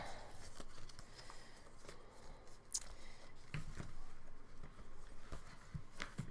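Faint handling of a Filofax refillable notebook as its faux-leather cover is opened: a few soft knocks and rustles, spread out, with quiet between them.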